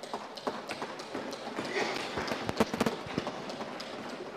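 Members of parliament thumping their wooden desks, the customary applause of the house, as a scatter of knocks that thickens into a dense run about two and a half seconds in, over a murmur of voices in the chamber.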